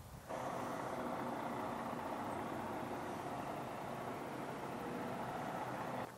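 A steady mechanical drone with faint steady tones in it, of the kind an idling engine or motor makes. It starts abruptly a moment in and holds unchanged.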